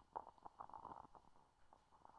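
Near silence with faint handling noises: a few soft clicks and rustles in the first second, one slightly louder tick near the start.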